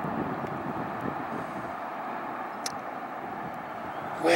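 Steady low outdoor background rumble, with a single short click about two-thirds of the way through.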